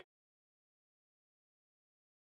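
Silence: the sound track drops out completely.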